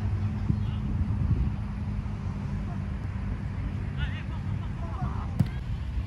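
Wind rumbling on a phone microphone at an outdoor football match, with faint distant shouts from players around four to five seconds in and a single sharp knock a little after five seconds.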